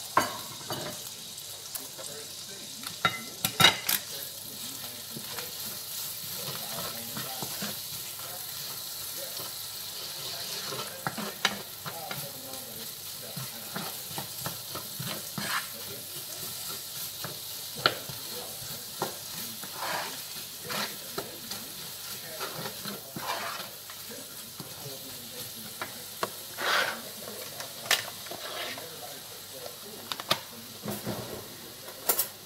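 Chopped onion and garlic frying in a frying pan, a steady sizzle, while a wooden spoon stirs them and knocks against the pan now and then.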